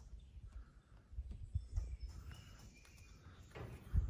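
Footsteps and low handling rumble from a phone being carried while walking, with a few faint bird calls in the background.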